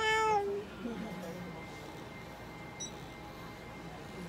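A domestic cat gives a single short meow, about half a second long, its pitch sagging slightly at the end.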